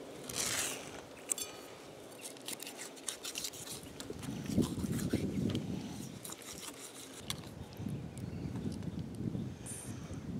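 Faint scraping and small scattered clicks of a knife cutting the skin and meat of a softshell turtle away from its bottom shell.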